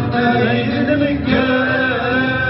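Male voices singing a Tamazight folk song, chant-like, with acoustic guitars accompanying, in a live performance.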